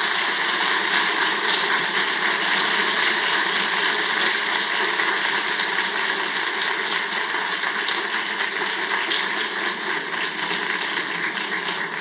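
An audience applauding: dense, steady clapping that eases slightly near the end.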